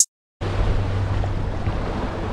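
The last beat of electronic music stops, and after a short silence, about half a second in, steady wind rumble on the microphone and surf washing over jetty rocks start suddenly and carry on evenly.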